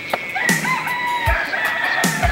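A pig squealing in one long, high cry as men hold it down for slaughter. Background music with a thumping beat plays underneath.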